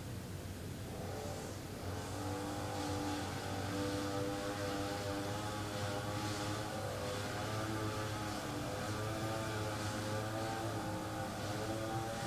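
A motor vehicle engine running steadily, starting about two seconds in, its pitch wavering slightly, over a low background hum.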